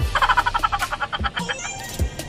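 A chicken-clucking sound effect: a fast run of short clucks for about a second and a half, followed by a brief rising squeak near the end, over background music.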